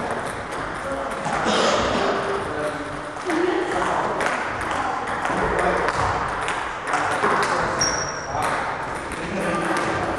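Celluloid table tennis balls clicking off bats and tabletops in quick, irregular succession, several rallies going at once, with voices in the background.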